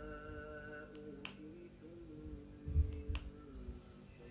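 Sharp clicks, two of them about two seconds apart, from fingertip presses on a 4x4 membrane keypad, over soft background music.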